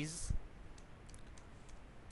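Computer keyboard typing: a scattered run of faint, light keystroke clicks, with a low thump just after the start.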